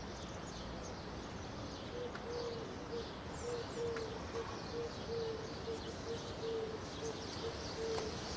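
Outdoor bird ambience: small birds chirping, with a low hooting call of short repeated notes starting about two seconds in and going on steadily over a background hiss.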